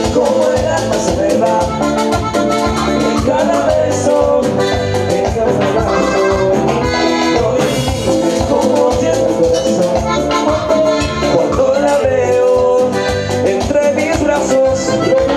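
Live Latin dance-band music: an accordion melody over a steady, driving drum beat, played loud and without a break.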